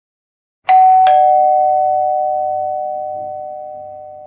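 Two-tone doorbell chime: a high ding about two-thirds of a second in, then a lower dong a third of a second later, both ringing on and fading slowly.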